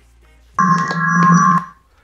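A loud electronic tone from the Bluetooth speaker that the phone is feeding as a wireless microphone: several steady pitches sound together for about a second, then die away.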